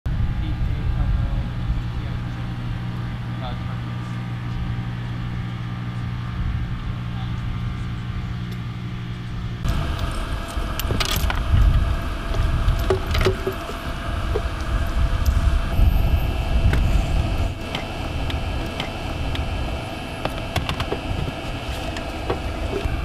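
A steady low machine hum over a low rumble for the first ten seconds or so. Then it gives way to metal clicks and rattles of cable connectors being fitted to field communications units, over a rumbling outdoor background.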